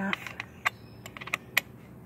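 Worm-drive metal hose clamp being tightened around a pipe with a screwdriver: a run of small, sharp, irregular clicks of tool on clamp, the loudest about a second and a half in.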